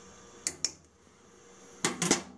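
Small clicks from a folding digital probe thermometer being handled and put down on the stovetop: two light clicks about half a second in, and a sharper click near the end.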